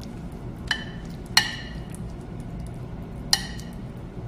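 A metal utensil clinking against cookware three times, each strike ringing briefly, the second loudest, over a steady low hum.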